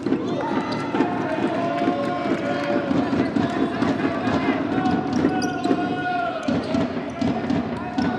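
A futsal ball being kicked and bouncing on a hardwood indoor court, heard as repeated sharp knocks, with players' long shouted calls and footsteps over the top in the echoing hall.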